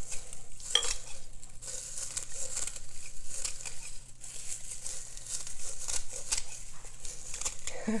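Dried spearmint stems and leaves crackling and rustling as they are crushed and pushed down into a small crock pot by hand, a dense run of small irregular crackles.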